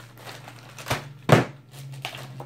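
Plastic-bagged items being handled and set down on a tabletop: two short knocks a little after the middle, the second louder, with light crinkling of plastic packaging.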